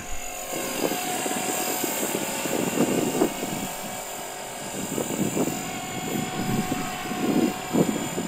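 EXI 450 electric RC helicopter in forward flight on Smartmodel scale 450 weighted main blades: a steady high motor whine over the whoosh of the rotor, rising and falling in loudness as it climbs and flies.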